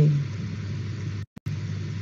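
A chanted syllable trails off, followed by the steady low hum and hiss of an open microphone carried over an online voice-chat connection. The audio cuts out completely for a moment a little past halfway, then the hum returns.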